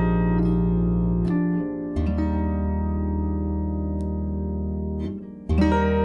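Harp playing slow plucked chords over deep, ringing bass notes, a new chord about every second or two, with a short lull before a fresh chord near the end.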